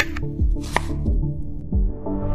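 Instrumental background music with a few sharp snips of kitchen scissors cutting leafy greens.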